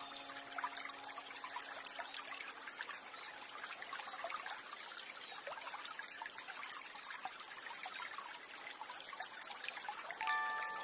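Water trickling steadily, with many small splashes and drips. A single held piano note dies away during the first few seconds.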